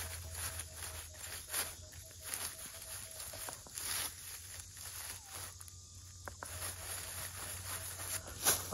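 Minelab Equinox metal detector sounding a faint tone that comes and goes as its search coil swings back and forth over a buried target, signalling a non-iron target that reads 19 to 20. The coil swishes softly through dry leaf litter.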